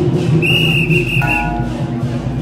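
A single high whistle blown for about half a second, over continuous background music.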